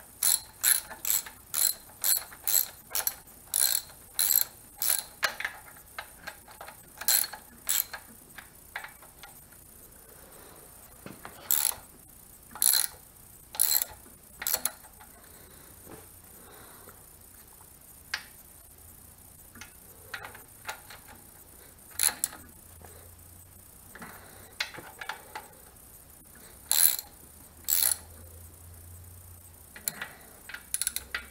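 Ratchet wrench clicking as nuts are tightened down on the rocker arm assembly of an air-cooled VW engine. A quick run of clicks about two a second comes first, then short scattered runs of clicks with pauses between them.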